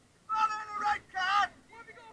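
A voice shouting twice on a football pitch: two loud, high, drawn-out calls, the first starting about a quarter second in and the second just after the middle.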